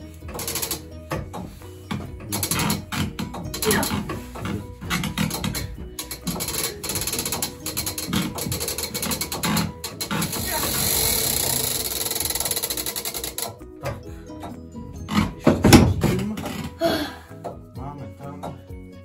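Mechanical tower clock being wound by hand: the crank turns the weight drum and its ratchet clicks over and over, with a steadier whirring stretch in the middle. Near the end a single loud knock.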